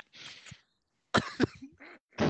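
A man coughing: a breathy exhale, then a sharp cough about a second in.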